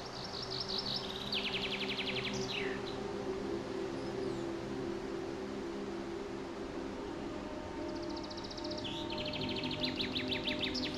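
A songbird singing two phrases, near the start and near the end. Each is a fast trill that steps down in pitch and ends in a quick falling note. Steady background music with long held tones plays under it.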